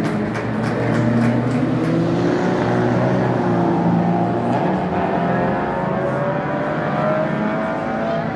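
Several small race-car engines running together as a pack passes, their notes overlapping and rising and falling as the cars go through the corner.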